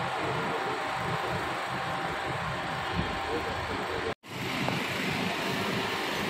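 Steady outdoor city-street noise: traffic hum and wind on the microphone, with faint voices underneath. It cuts to silence for an instant about four seconds in, then carries on.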